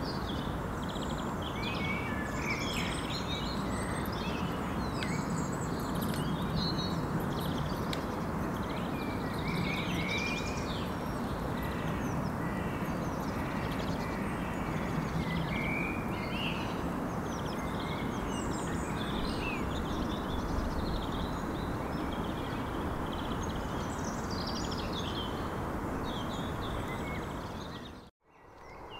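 Many small birds chirping and singing over a steady wash of outdoor background noise, fading out near the end.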